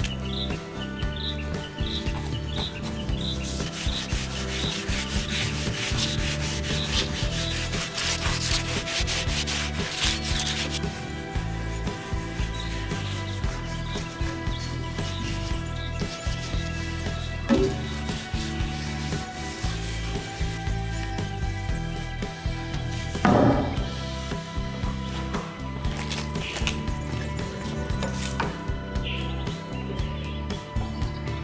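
A cloth rubbing wood wax oil into a bare wooden branch in fast back-and-forth strokes, busiest in the first third, with a couple of brief bumps later on. Soft background music runs underneath.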